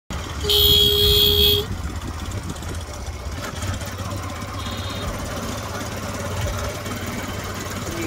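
A vehicle horn sounds once, a steady blast of about a second near the start. A steady low rumble of wind and road noise from riding runs beneath it.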